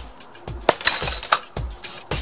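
A rubber mallet strikes the mouth of a water-filled brown glass bottle, and the bottle's bottom breaks out with a sharp crack and glassy crash about two-thirds of a second in, as the shock carried through the water blows out the base. Background music with a steady beat plays over it.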